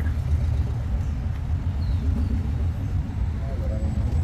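Road traffic on a nearby street: a steady low rumble of passing cars.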